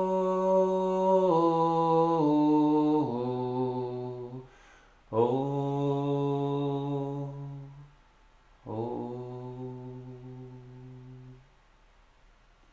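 Clean electric guitar playing a slow outro: long sustained notes stepping down in pitch, then two final chords struck about five and nine seconds in, each left to ring and fade away to near silence.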